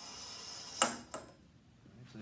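A ball rolling down a lab ramp makes a steady rolling hiss that grows louder as it speeds up. It ends with a sharp click about a second in as the ball reaches the bottom, followed by a smaller click a moment later.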